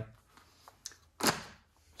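A disposable plastic paint-cup liner and lid being handled, with one sharp click about a second in that fades quickly, after a fainter tick just before it.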